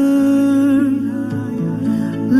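A slow devotional song playing: a voice holding long, smoothly gliding notes, hummed or softly sung, over quiet accompaniment.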